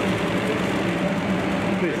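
Steady low hum of an idling bus engine, with people talking in the background.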